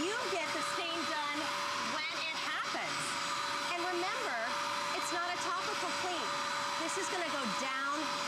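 Bissell Spot Clean Pro portable carpet cleaner's suction motor running: a steady whine with a constant rush of air as the hand tool is drawn over the carpet, extracting a spill of yogurt.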